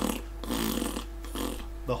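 A man blowing raspberries with his lips, a buzzing "pffft" made three times (the last one short), imitating the raspy, farting distortion of a small guitar amp whose speaker cone has had pieces cut out of it.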